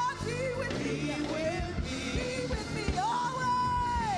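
A woman singing a gospel song into a microphone over a backing band with a steady beat. About three seconds in she slides up to a high note and holds it.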